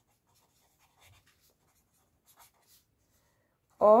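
Pen writing on paper: faint, short scratching strokes as a word is written by hand.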